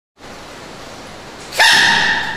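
Giant panda cub sneezing once: a sudden, loud, squeaky sneeze about one and a half seconds in, over a steady background hiss.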